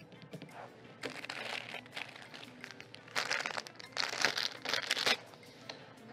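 Plastic packaging rustling and crinkling in two main bursts of handling, with small crackles, as items are rummaged through and lifted out.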